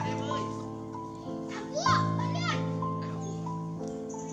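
Background music with a melody of steady held notes, and high-pitched cries that rise and fall over it, once near the start and again in a louder cluster around the middle.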